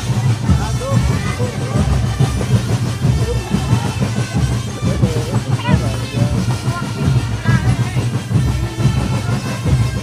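Marching drum band playing, dense rapid drum strokes sounding throughout, with voices mixed in over the band.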